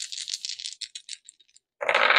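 A deck of tarot cards being shuffled: a quick, dense run of papery clicks lasting about a second and a half, stopping shortly before the end.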